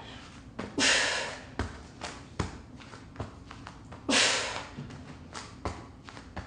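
A woman breathing out hard twice with effort, about a second in and again about four seconds in, while doing plank up-downs. Between the breaths come soft thumps of her hands and forearms landing on an exercise mat.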